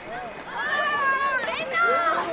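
Excited children's voices calling out over one another, high-pitched, with a short rising squeal about halfway through.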